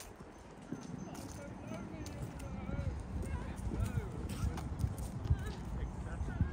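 Passers-by talking, with a steady run of footsteps on a paved path.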